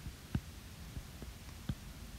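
A few faint, soft taps of a stylus tip on a tablet's glass screen while a line is drawn, over a low steady background hum.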